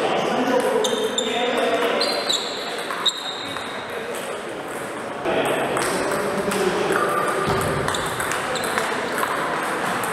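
Celluloid-type table tennis ball clicking off rubber paddles and the table during a short rally in the first three seconds, followed by voices.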